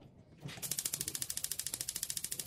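Gas stove's spark igniter clicking rapidly and evenly, about a dozen ticks a second, starting about half a second in as the burner knob is held in to light the burner.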